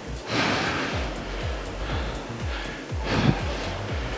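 Concept2 rowing machine's air flywheel whooshing with each drive, twice about 2.7 seconds apart, over background music with a steady beat.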